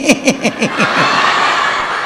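A man laughing into a microphone in a quick run of short ha-ha bursts, each falling in pitch, for about the first second. Then a hall full of people laughing together.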